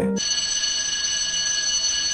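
A steady, high-pitched electronic ringing tone of several pitches over a hiss, like an alarm, starting suddenly just after the music stops.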